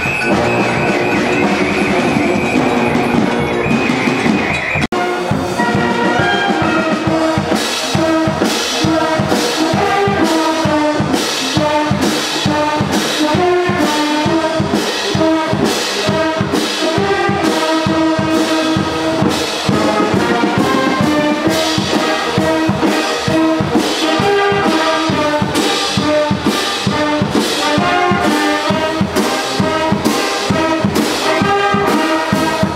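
Wind band playing live: tubas, baritone horns, saxophones and flutes over a steady drum beat. A sudden brief drop about five seconds in, after which the music runs on with a regular beat.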